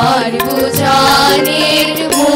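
A girls' choir singing a Bengali patriotic song together through a stage sound system, with held, bending sung notes over instrumental accompaniment.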